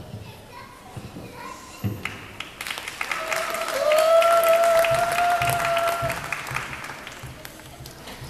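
Spectators clapping in an ice rink hall as a young figure skater takes the ice. The applause swells about two and a half seconds in and fades near the end, with one long high call held for about two seconds in the middle.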